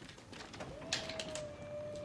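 A few sharp mechanical clicks of a record player being handled, with a steady tone that dips slightly and then holds, starting a little past the middle.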